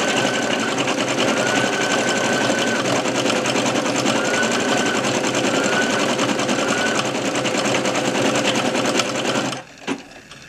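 Brother computerised embroidery machine stitching at speed: the needle runs in a fast, even rhythm, with a short rising whine recurring several times as the hoop moves. The stitching stops suddenly about half a second before the end, leaving a single click.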